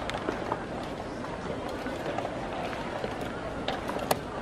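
Wooden chess pieces set down on the board and the chess clock's buttons pressed during fast blitz play: a few sharp clicks, one just after the start and one near the end, over steady room noise.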